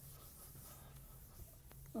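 Faint chalk writing on a blackboard over a low steady room hum, with a couple of light taps near the end.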